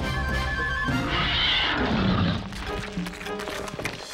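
Dramatic cartoon score with a cartoon predator dinosaur's cry, which rises about a second in and then falls in pitch.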